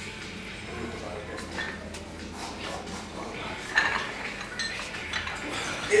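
Steel dumbbells clinking and knocking as they are handled, with several sharp metallic clinks in the last two seconds over a steady gym background.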